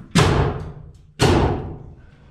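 Pneumatic framing nailer firing twice, about a second apart, driving nails overhead into wood framing; each shot is a sharp bang with a short hissing fade.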